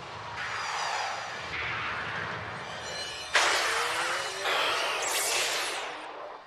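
Animated sound effects of rushing, whooshing noise that swells in waves, with a sudden loud burst about three seconds in.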